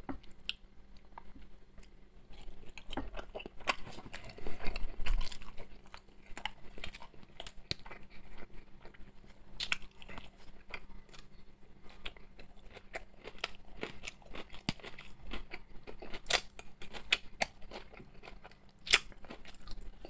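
A person chewing and biting food, with wet mouth smacks and crunching. A few sharper clicks come from a metal fork in a plastic food container.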